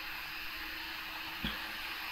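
Steady hiss of the recording's background noise, with a faint hum and one brief soft low sound about one and a half seconds in.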